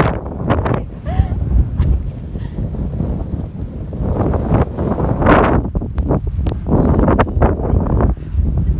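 Strong, gusty blizzard wind buffeting a phone's microphone: a heavy low rumble that swells and fades in gusts, loudest about five seconds in.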